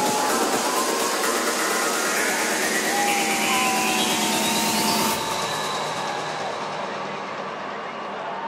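Electronic dance music build-up in a DJ set: a loud, rising noise sweep with the bass and kick drum dropped out, cutting off suddenly about five seconds in. After that there is a quieter stretch with the festival crowd cheering and whooping.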